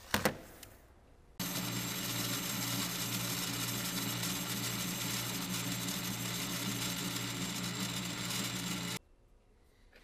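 A small metal lathe running steadily while turning down a metal bushing: an even motor hum with cutting noise that starts abruptly about a second and a half in and stops suddenly near the end. A short knock is heard just at the start.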